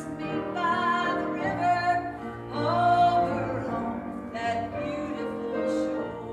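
A woman singing a slow solo with piano accompaniment, holding long notes with vibrato.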